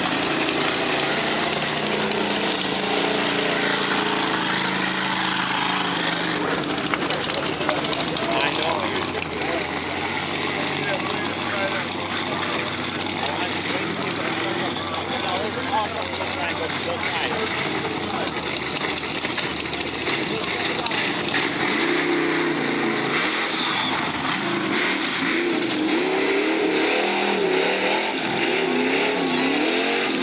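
Lifted mud-bog truck engines running and revving as the trucks plough through a deep mud pit, with a steady low hum through the middle and rising, wavering engine pitch near the end, over crowd voices.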